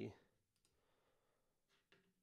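A few faint, sparse clicks of a computer mouse against near silence.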